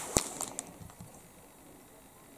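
Plastic handling noise: a clear cellophane kit bag crinkling and a plastic model-kit sprue being picked up, with one sharp click a fraction of a second in. The rustle dies away within about half a second.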